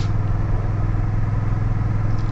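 Honda Rebel 1100's parallel-twin engine running at a steady cruising speed, heard from the rider's seat: an even, low engine note that holds without change.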